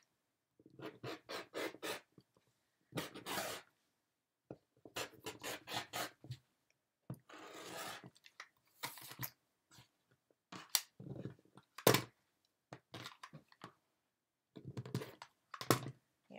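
Rotary cutter slicing through velour fabric on a cutting mat in short, crunchy strokes, with fabric being handled and shifted between cuts. One sharp click about three quarters through, as of the cutter or acrylic ruler set down on the mat.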